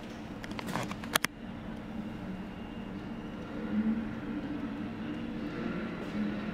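Low steady hum of street traffic, with a few sharp clicks about a second in.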